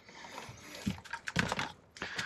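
Handling sounds of a diagnostic cable being moved around in a car footwell: a soft rustle, then a run of light clicks and knocks in the second half.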